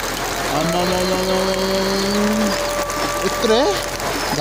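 A voice singing a long held note that slides up and down near the end, over the steady hiss of rain.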